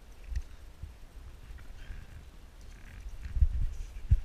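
Low rumbling and thumps on a helmet-mounted camera's microphone as the climber moves on the rock, loudest about three and a half seconds in, with faint soft breath-like sounds in between.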